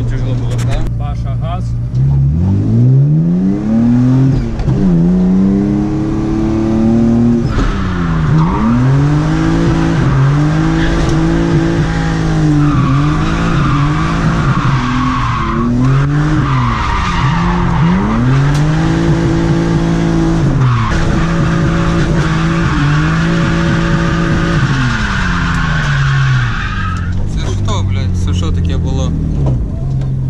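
A BMW E30's engine revving up and down again and again through drift slides, heard from inside the cabin. Tyres squeal from about seven seconds in until near the end.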